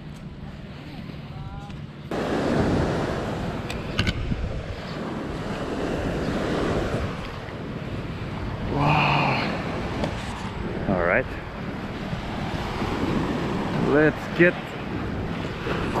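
Small waves washing onto a sandy beach, with wind buffeting the microphone, starting abruptly about two seconds in after a quieter stretch. Brief snatches of voices come through now and then.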